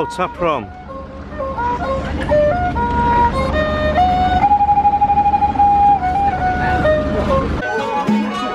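Cambodian bowed string fiddle playing a slow single-line melody of held notes that step up and down with slides, one long wavering note in the middle, over a low steady hum. Near the end it cuts to a traditional Khmer ensemble of fiddles and flute.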